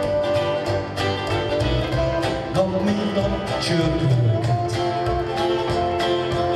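Hungarian folk band playing live: acoustic guitar, fiddle, cimbalom and double bass, with held fiddle notes over a steady beat of plucked and struck notes.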